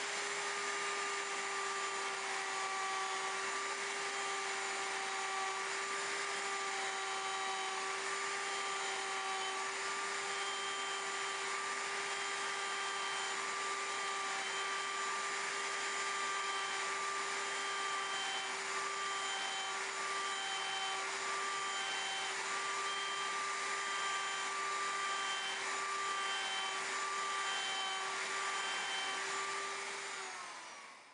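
Handheld router motor running steadily at high speed with a constant whine, its bit taking a shallow cut in a disc blank as the disc is rotated under it to rout a concave dish.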